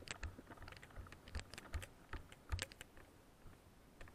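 Footsteps crunching on a gravel track: a soft thud every step or so with small gravel clicks, fading out about two-thirds of the way through.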